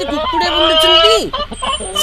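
Hens clucking, with one drawn-out call that drops in pitch as it ends a little after a second in.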